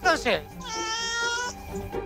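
A domestic cat meowing once: a single held meow of just under a second, near the middle.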